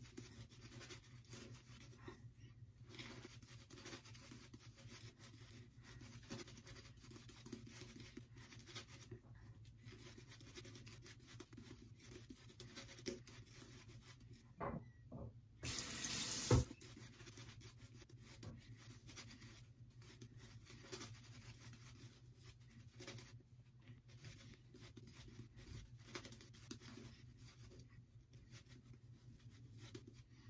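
Shaving brush face-lathering on the face and neck: faint, rapid, wet swishing and scrubbing of the bristles through the lather. About halfway through there is a brief, louder rush of noise.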